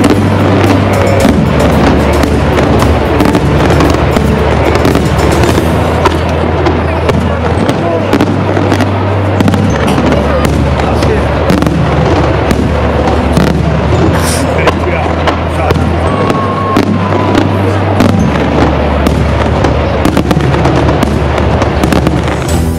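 Aerial firework shells bursting in quick, continuous succession with crackling, many reports a second, over background music with a steady bass line.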